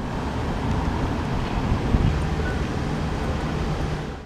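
Steady outdoor background noise, mostly a low rumble like distant road traffic, with no single event standing out.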